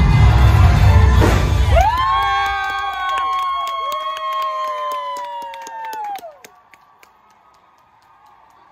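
Dance-number music with a heavy beat ends about two seconds in, and the studio audience breaks into long screams, whoops and applause, which die away after about six seconds. Heard from a television broadcast playing in the room.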